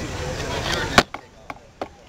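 Camera being handled and picked up: one sharp knock on the camera body about a second in, then a few lighter clicks and taps as it is moved.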